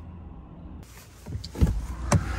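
Steady low hum of a car heard from inside the cabin. Partway through it gives way to a louder rumble, with a few sharp thumps near the end.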